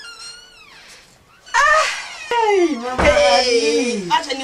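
High-pitched, meow-like wailing voice calls that glide in pitch. They are faint at first, then turn loud about halfway in, ending in one long call that falls in pitch.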